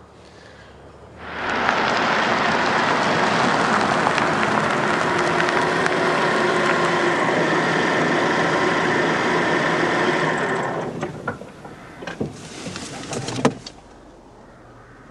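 A car driving on a road, its engine and tyre noise loud and steady, starting abruptly about a second in and fading out after about ten seconds. A few sharp clicks or knocks follow near the end, in the quieter car interior.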